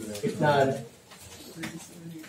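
A man's voice in a brief utterance about half a second in, then quieter low sounds.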